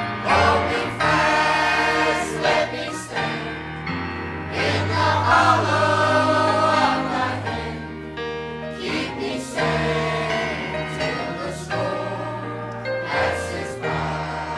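Mixed church choir of men and women singing a hymn together, with steady low held notes of accompaniment underneath.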